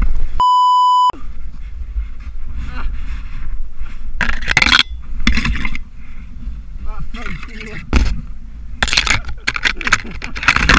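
A steady electronic bleep lasting under a second near the start, of the kind laid over a bleeped-out swear word. It is followed by faint voices and several loud bursts of scraping and rustling as bare branches and snow rub against the rider and the helmet camera.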